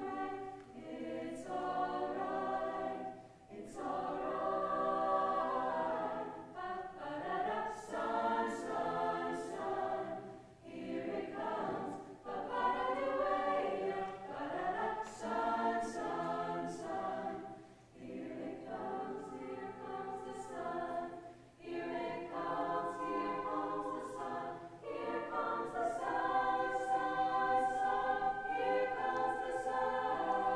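Mixed-voice choir of boys and girls singing in harmony, in phrases with brief breaks between them.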